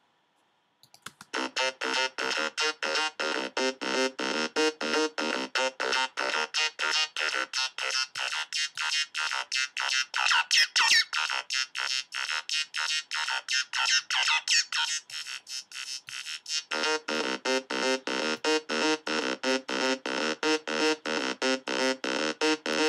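Waldorf Blofeld synthesizer playing a rapid repeating sequence of short notes, starting about a second in. Its filter cutoff and resonance are being turned as it plays: in the middle the sound thins and brightens with resonant sweeps, then it fills out again.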